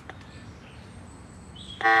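A click from the hand-crank emergency lamp-radio's controls, then near the end a loud, steady, horn-like electronic tone of several pitches starts suddenly from its built-in speaker.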